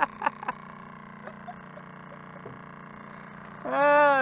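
A few short bursts of voice at the start, then a steady low hum, then a man laughing loudly near the end.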